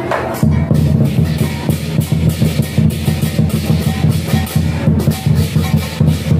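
Lion-dance drum and crashing cymbals, a fast steady beat of about three to four hits a second, starting about half a second in.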